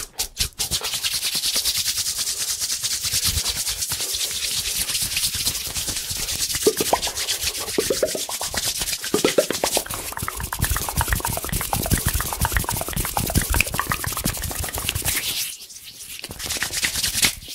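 A few quick taps, then fast, vigorous hand rubbing right at the microphone, a dense steady hiss. From about halfway, short rising mouth sounds are layered over the rubbing.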